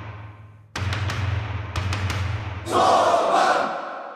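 Channel intro jingle music: two deep drum hits over a low hum, then a louder, denser swell for the last second or so that cuts off at the end.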